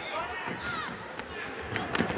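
Faint arena crowd noise with scattered shouts, then a few sharp smacks of punches landing in the second half.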